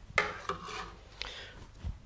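A felt whiteboard eraser rubbing across a whiteboard in a few short wiping strokes.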